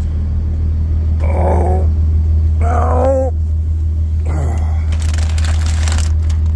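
Steady low drone of the semi truck's running engine heard inside the cab. Two brief voice sounds come in the middle. A plastic bag of dog treats crinkles as it is handled near the end.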